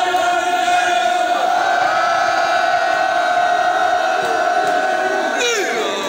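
A man's voice over loudspeakers holds one long, drawn-out chanted cry in front of a crowd. The cry steps up in pitch about a second and a half in, holds steady, and breaks into wavering pitches near the end.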